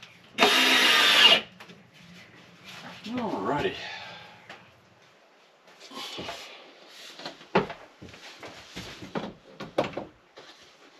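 A cordless drill-driver runs for about a second near the start. Later come scattered knocks and clunks as a mirrored cabinet door is lifted off and another door is handled.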